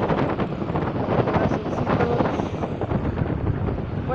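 Wind buffeting the microphone: a continuous, uneven low rumble with gusty flutter.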